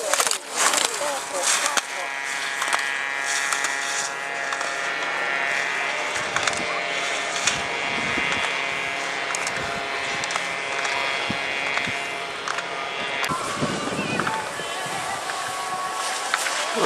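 Slalom racer's skis scraping and carving across hard snow as they run the gates, with voices in the background.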